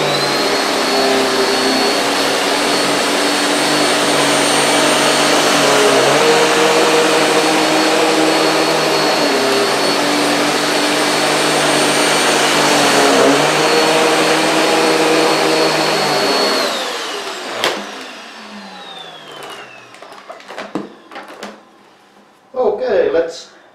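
Vorwerk VK135 upright vacuum cleaner with a belt-driven power brush head running at full power over sandy carpet: a loud steady motor whine, its lower hum shifting in pitch a few times as the nozzle is pushed back and forth. About 17 seconds in it is switched off with a click and winds down, falling in pitch over a few seconds.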